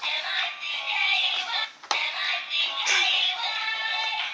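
A singing Mickey Mouse musical greeting card playing its recorded song through its tiny speaker, thin and tinny. The song breaks off briefly just before two seconds in, then starts again with a click.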